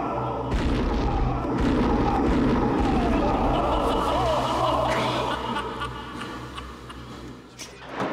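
Replayed burst of a water-filled Boeing 737 main-wheel aircraft tyre, overinflated to about 900 psi: a long, dense rumble with a few thuds that dies away near the end.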